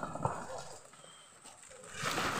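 Large toko palm fronds rustling and crackling as they are cut and handled, with two or three sharp knocks near the start.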